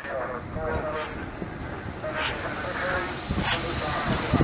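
LNER B1 two-cylinder 4-6-0 steam locomotive running slowly tender-first into the station, with beats about a second apart and heavier low knocks near the end.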